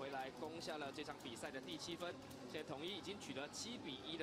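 A man talking, quieter than the speech around it.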